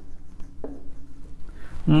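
Marker pen writing on a whiteboard, a few faint short strokes.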